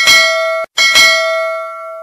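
Notification-bell sound effect from a subscribe-button animation: a bright bell ding struck twice, about three-quarters of a second apart. The first ring is cut short by the second, which fades out slowly.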